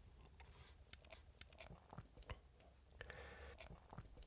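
Near silence with faint, scattered small clicks; toward the end, a hand handles wooden chess pieces on a wooden board.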